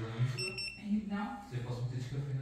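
A fusion splicer gives a short high electronic beep about half a second in, as the fused fibre's heat-shrink protection sleeve is set into its heater.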